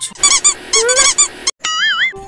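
Comic squeaky sound effects: a run of short, high chirps in quick twos and threes, then, after a sudden brief cut, a wavering, warbling whistle near the end.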